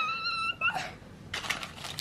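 A short high-pitched squeal, held for about half a second and rising at the end, then soft rustling and a few light clicks of small plastic toy packaging being handled.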